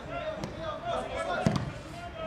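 Voices calling on a football pitch, with one sharp thud of the ball being kicked about one and a half seconds in.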